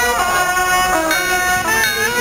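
Taoist ritual music on a suona, a Chinese shawm, playing a loud, reedy melody of held notes that step up and down in pitch.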